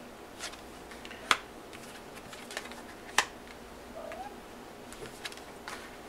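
Tarot cards being dealt from the deck and laid down on a cloth-covered table: a scattering of soft clicks and card slaps, the two sharpest about a second in and about three seconds in.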